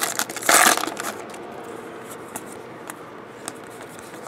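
Foil wrapper of a trading-card pack being torn open and crinkled, loud for about the first second, then faint rustles and light clicks as the cards are handled.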